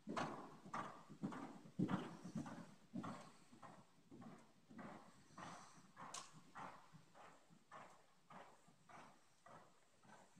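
Hoofbeats of a ridden horse on the soft sand footing of an indoor riding arena: a faint, uneven run of thuds, a few a second.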